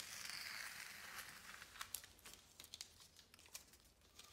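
Blue painter's tape being peeled off paper: a tearing rasp that falls in pitch over the first second or so, then fainter crinkling and small clicks as the strip is handled.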